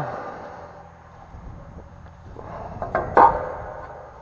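An aluminium levelling staff being pulled up out of a concrete septic tank, rubbing against the concrete, with the loudest scrape a little after three seconds in.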